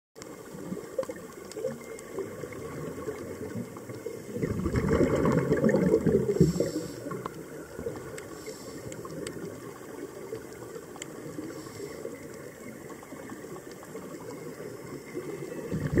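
Underwater ambience picked up by a camera in its housing, with faint scattered clicks, and one loud rush of bubbles from a scuba diver's regulator exhaust, an exhaled breath lasting about two seconds, about four seconds in; another exhalation begins at the very end.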